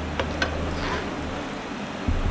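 Cubes of tempeh tipped off a plastic cutting board into a wok of beaten egg, with a couple of light taps near the start over a low steady hum. The oil is not yet hot, so there is little frying sound.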